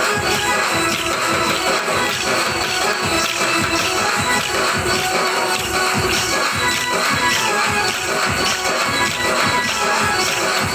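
Kolatam bhajan music: electronic keyboard and drum playing continuously, with many wooden sticks clacking together in rhythm as the dancers strike them.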